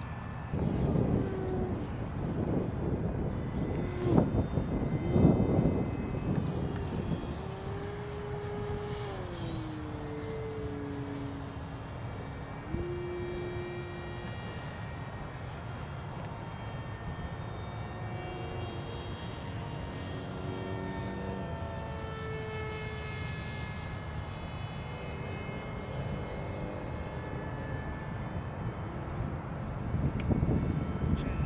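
A small propeller aircraft's motor droning, its pitch stepping and gliding up and down, then sliding gently lower. Low rumbling gusts on the microphone come and go over the first six seconds.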